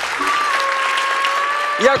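Studio audience applauding, with one long steady held tone over the clapping; a man's voice starts near the end.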